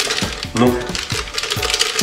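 Background music with a run of light clicks and knocks as frozen açaí pulp is pushed from its packet into a metal blender jug.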